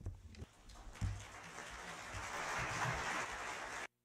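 Audience of delegates applauding. A few low thumps come at first, then the clapping builds steadily and cuts off abruptly just before the end.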